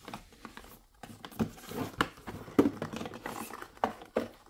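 Small cardboard boxes and packaging handled and shifted by hand: irregular light taps, scrapes and rustles, with one sharper tap a little past halfway.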